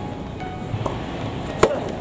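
One sharp knock about one and a half seconds in, with fainter taps before it: a soft tennis ball bounced on the court surface as the player readies to serve.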